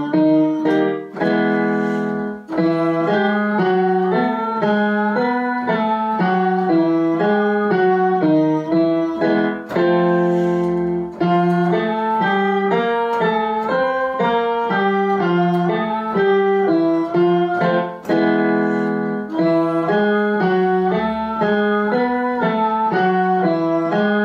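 A woman sings a vocal warm-up exercise in thirds on solfège syllables (do-mi, re-fa, mi-sol), doubled note for note on an M-Audio digital piano. The notes step up and down, and each phrase ends on a held note about every eight seconds before the pattern starts again.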